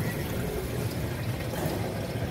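Water running and trickling steadily through a saltwater coral frag system's circulation and filtration.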